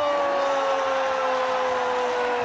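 A man's long, drawn-out shout of "yeah" into the microphone: one held note that slowly sinks in pitch, over a cheering crowd.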